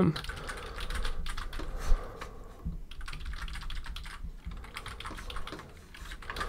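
Keystrokes on a computer keyboard: irregular runs of quick key clicks with short pauses, one sharper click about two seconds in.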